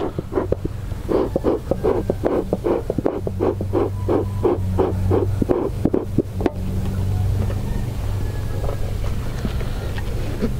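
Bee smoker's bellows pumped in a quick, even run of puffs, about three a second, stopping about two-thirds of the way in. A steady low hum runs underneath.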